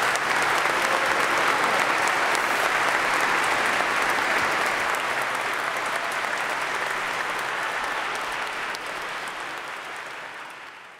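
Audience applauding steadily at the end of an operatic aria, the applause slowly fading over the second half.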